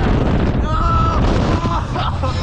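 Wind rushing over the microphone as a swinging thrill ride carries the riders upside down. About two-thirds of a second in, a rider lets out a held scream, followed by shorter yells.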